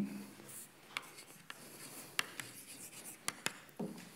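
Chalk writing on a blackboard: faint scraping of the chalk with a scatter of sharp taps as the letters are formed.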